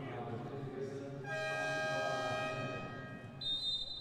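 Arena game horn sounding one steady blare of about a second and a half, starting about a second in, signalling a timeout. Near the end a referee's whistle blows one long, steady note, over a low murmur of arena voices.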